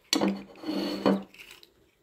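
A porcelain dish knocks on a wooden tabletop, then scrapes across it for about a second as it is turned around.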